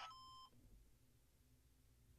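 A faint, short electronic beep of about half a second, then near silence: a handheld ham radio's alert beep as it receives an APRS packet.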